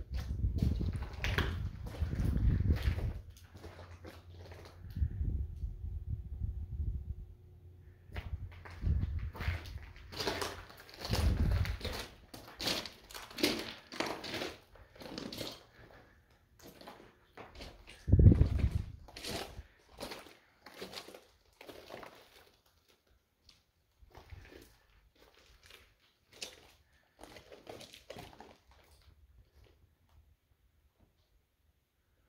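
Footsteps crunching on loose gravel and rubble, with dull bumps and one louder thump a little past the middle, thinning out toward the end.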